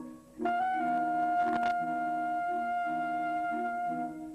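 Saxophone quartet playing: after a brief pause, one saxophone holds a single long high note while the lower saxophones move through changing notes beneath it.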